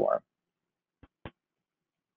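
The tail end of a man's spoken word, then silence broken about a second in by two brief faint clicks, a quarter of a second apart.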